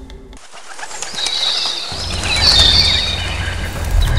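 Birds chirping and calling in a forest ambience, starting about a second in, with a low rumble underneath from about halfway.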